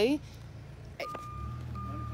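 A vehicle's reversing alarm beeping at one steady pitch, starting about a second in, over a low engine hum that grows louder midway.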